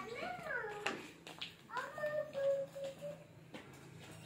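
Rooster crowing: a short rising-and-falling call at the start, then a longer crow that rises and holds a steady high note for about a second.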